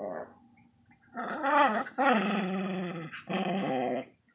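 A small dog growling: a brief growl at the start, then three long, wavering growls of about a second each.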